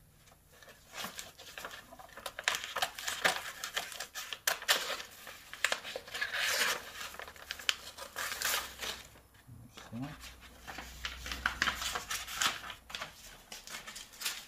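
Scissors cutting a sheet of paper: an irregular run of crisp snips mixed with the paper rustling as it is turned and handled.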